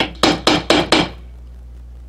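A mallet striking a fastener-setting tool on a small anvil, five quick taps in about a second, then stopping: the final light taps that finish riveting a metal fastener through thick leather.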